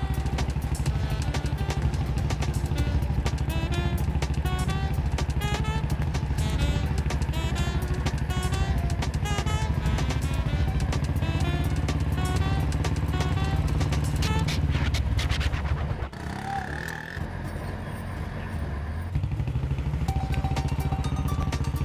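Background film music with a melody over a motorcycle engine running steadily. The engine drops away about sixteen seconds in, and a rising rev is heard near the end.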